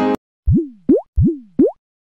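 Background piano music cuts off with a click, followed by a cartoon sound effect: two quick pairs of synthetic 'bloop' sounds. In each pair a tone rises and slides back down, then a second tone sweeps rapidly upward.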